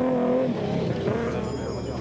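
Engine of an off-road racing Nissan Hardbody pickup running at speed, its note steady at first, then dropping about half a second in.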